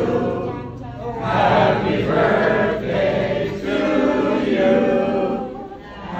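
A group of voices singing a birthday song together, a cappella, in sustained phrases with short breaths between them.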